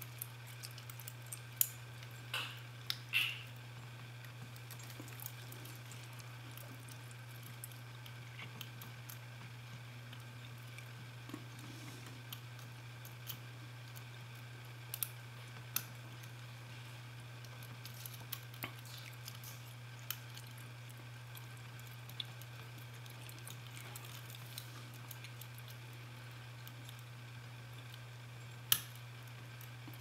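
Scattered faint clicks and scrapes of a Bogota rake pick and tension wrench working the pin stack of a TESA euro profile pin-tumbler cylinder, over a steady low hum.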